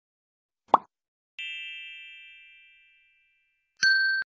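Subscribe-button animation sound effects: a short pop, like a mouse click, a little under a second in, then a bright bell chime that rings and fades over about a second and a half, and a second chime starting just before the end.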